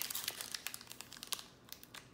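Foil wrapper of a Pokémon TCG booster pack crinkling as it is torn open by hand. A dense run of small crackles thins out after about a second and a half.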